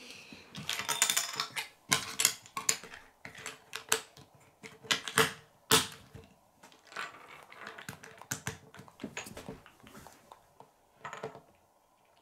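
Plastic Lego pieces clicking and snapping together as they are pressed onto a small baseplate. The clicks come thickly in the first half and thin out towards the end.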